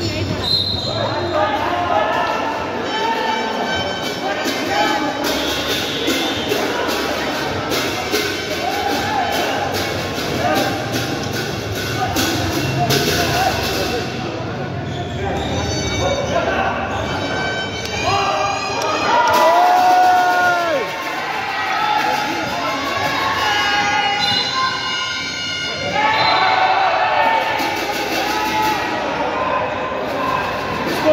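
Basketball bouncing on an indoor court during play, amid continuous voices and background music echoing in a large hall.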